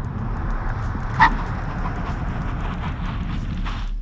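Kia Stinger braking hard from about 100 km/h to a stop: steady tyre and road noise with a low rumble, and a short tyre squeal about a second in as the brakes bite.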